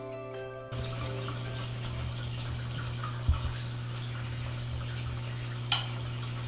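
Mallet-percussion music ends about a second in. After it comes a steady low hum with water trickling and dripping: distillate running into the glass oil separator of a steam distiller. A single low thump sounds near the middle.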